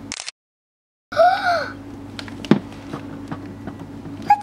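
A brief dead-silent gap, then a child's short wordless vocal sound that rises and falls in pitch. After it come steady room hum and one sharp tap of a doll or toy being handled.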